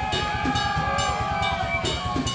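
A rock band playing live: drum hits under several long held notes that bend slightly in pitch.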